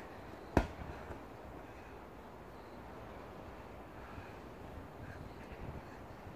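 A dumbbell set down hard onto rubber flooring, one sharp thud about half a second in, followed by a few faint knocks.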